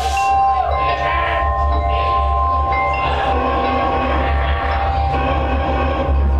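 Live deathcore band playing loud through a small club's PA: a heavy, steady low bass drone under long held ringing tones, one of them bending up in pitch near the start.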